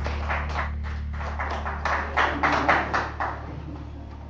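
Scattered applause from a small studio audience after a bandoneon performance, thinning out and fading over about three seconds, over a steady low electrical hum.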